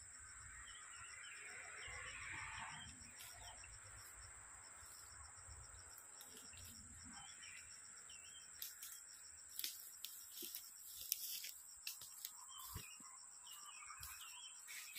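Faint outdoor ambience: a steady, high-pitched insect drone, with a few soft rustles and clicks in the second half, consistent with footsteps in dry leaf litter.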